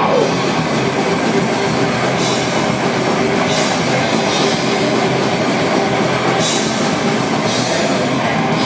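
Heavy metal band playing live: distorted electric guitars and a drum kit, loud and steady, with several cymbal crashes.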